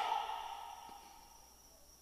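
A pause in amplified speech: the last words' echo in the hall fades away within about a second, leaving near silence with a faint steady high-pitched tone from the sound system.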